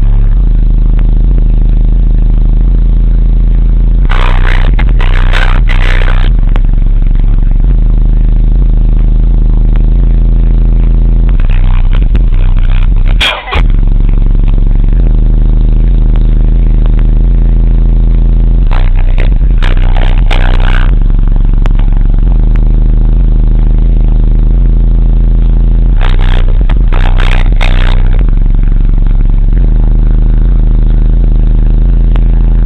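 A 12-inch Re Audio MX car subwoofer in a ported box playing bass-heavy music at high volume, heard from inside the car, with the recording overloaded. Deep bass notes run steadily, with recurring bursts of higher noise every several seconds and a brief break about halfway through.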